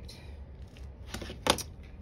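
Quilting tools handled on a cutting mat: faint rustling and a few small clicks, then one sharp clack about one and a half seconds in as the rotary cutter is set down on the mat.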